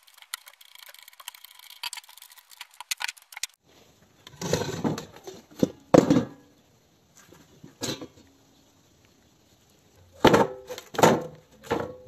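Faint clicking of a spanner on the nut of a grinder jig, then a few short scrapes and knocks of a rusty steel sheet being laid and shifted on a wooden stand, the loudest knocks about six seconds in and near the end.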